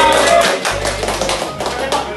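A group of people clapping their hands, many sharp irregular claps, over music with a deep bass line.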